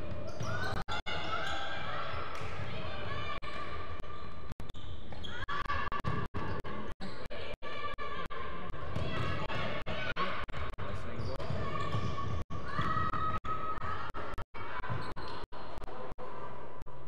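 Echoing sports-hall sound of players on court: overlapping voices calling out, with shoe squeaks and footfalls on the wooden floor. The sound cuts out for a split second about a dozen times.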